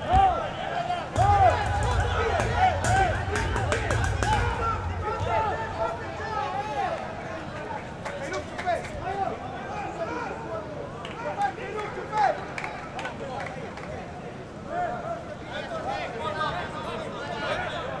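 Open-air sound of a football match without commentary: scattered shouts and calls from players and spectators carrying across the pitch, over the general ground noise.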